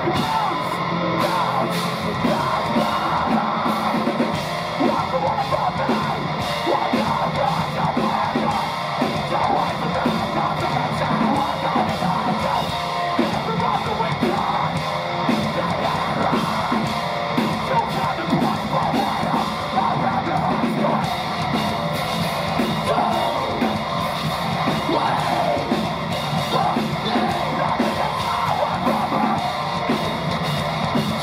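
Metalcore band playing live at full volume: heavily distorted electric guitars, bass guitar and a drum kit, with screamed vocals over them.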